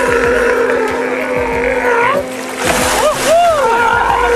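Safari boat's motor running with a steady whine that bends upward about two seconds in, over water splashing from a sea lion swimming alongside the boat. A few short rising-and-falling cries come near the end.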